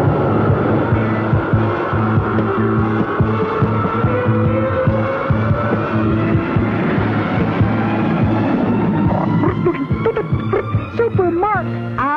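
Cartoon sound effect of a jet fighter's engines roaring on takeoff and fly-by, with a slowly rising whine in the middle, over background music. Wavering tones come in near the end.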